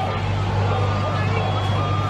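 Police water cannon in action: a steady low engine drone under the rushing hiss of the water jet, with short steady beeps sounding on and off.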